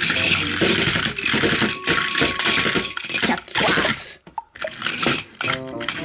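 Plastic Plarail toy train and its wagons rattling and clicking as they move across the floor, over background music. The rattling stops abruptly about four seconds in, leaving the music.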